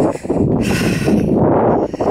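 Wind buffeting the microphone: a dense, steady low rumble, with a stronger gust about half a second to a second in.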